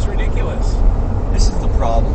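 Steady low rumble of a Jeep driving on the road, heard from inside the cabin, with a few words of talk near the end.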